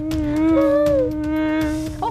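A mosquito's whining buzz close to the ear: one steady, drawn-out droning tone held for about two seconds.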